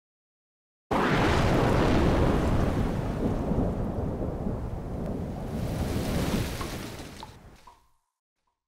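Logo sound design of rain with a deep rumble of thunder. It starts suddenly about a second in, swells brighter again around the middle, and fades out near the end.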